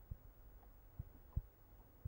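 Faint, soft, irregular low taps of a marker pen on paper during handwriting, a few knocks spaced a fraction of a second apart.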